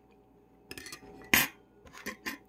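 An eating utensil scraping through food in a bowl, then one loud clink against the bowl a moment later.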